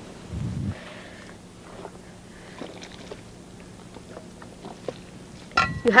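Hands kneading a damp mix of compost, seed and red clay in a plastic tub: faint crumbly rustles and small scrapes, over a thin steady hum.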